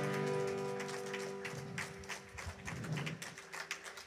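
The last chord of a worship song on acoustic guitar ringing out and fading away, with a few scattered light taps in the second half.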